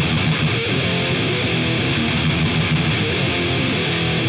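Distorted electric guitar playing a steady riff at the start of a crust punk song, without the full band yet.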